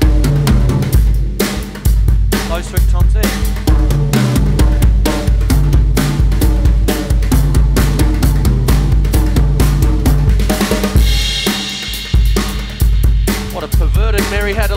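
Acoustic drum kit played in a steady rock beat: bass drum and snare under melodic patterns played across the tom-toms, with a cymbal crash about eleven seconds in.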